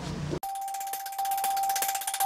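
News channel's logo sting: after an abrupt cut about half a second in, a held bell-like tone with a rapid sparkling shimmer above it.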